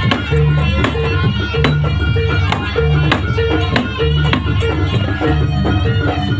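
Javanese jaranan accompaniment: a gamelan-style ensemble playing a steady, repeating pattern, with regular drum strokes, low gong-like tones recurring about every second and a half, and a wavering melody line above.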